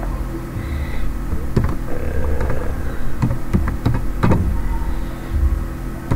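A handful of separate keyboard keystrokes as a word is typed, over a steady low electrical hum.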